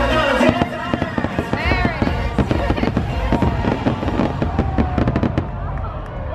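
Fireworks going off in quick succession, many rapid bangs and crackles, with music playing alongside.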